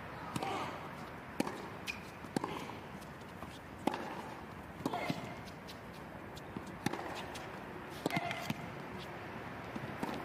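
Tennis rally: rackets striking the ball about once a second, sharp pops over a steady hiss of court ambience, with short grunts from the players on some strokes.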